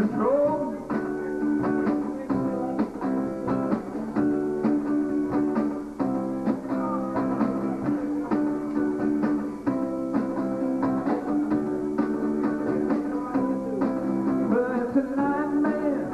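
Steel-string acoustic guitar strummed in a steady rhythm, playing chords through an instrumental stretch of a song.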